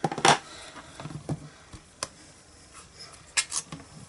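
Clicks and light knocks of a plastic Stamparatus stamping platform and ink pad being handled as the hinged plate is closed to stamp and lifted again. There is a sharp click about a quarter second in, a few soft taps after it, and a quick cluster of clicks near the end.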